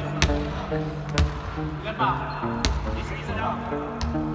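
Basketball bouncing on a hardwood gym floor, three sharp thuds at uneven intervals, under background music with a few short shouts from players.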